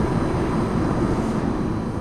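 Steady rumble of a moving car, heard from inside the cabin.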